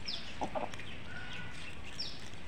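Birds calling: short, high, falling chirps several times over a steady background hiss, with a couple of brief low sounds about half a second in.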